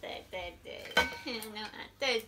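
Metal cutlery clinking against ceramic bowls and plates while people eat, with one sharp clink about a second in, amid voices at the table.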